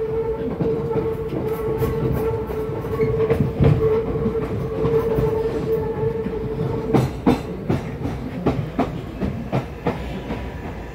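Electric passenger train running on the rails, heard from inside the carriage: a steady whine over the rumble, then, from about seven seconds in, a run of clacks as the wheels pass over rail joints.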